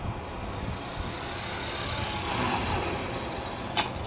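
450-size RC helicopter descending in autorotation, its unpowered rotor whooshing over wind noise, with a faint high whine that rises and then falls. A sharp click near the end as it touches down on the grass.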